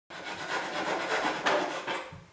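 A small hand frame saw cutting through a meter stick held in a plastic miter box: repeated back-and-forth rasping strokes of the blade.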